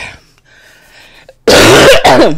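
A woman coughs once, loud and harsh, about one and a half seconds in, through a hand held over her mouth, her voice falling away at the end of it.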